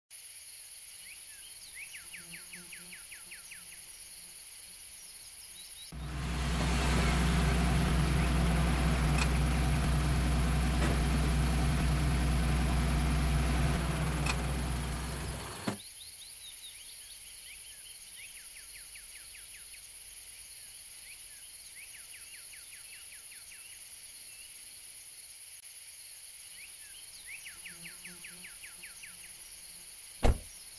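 Outdoor ambience with a short, high chirping trill that recurs every so often. About six seconds in, a loud, steady, low engine rumble comes in, runs for about ten seconds and then cuts off with a click.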